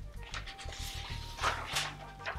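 Quiet background music with a steady low beat. Over it, about four short scratchy strokes of a marker writing on paper.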